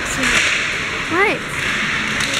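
Ice hockey game noise in an indoor rink: a steady hiss of skates on the ice and general rink sound. A little after a second in, a voice gives one short shout that drops quickly in pitch.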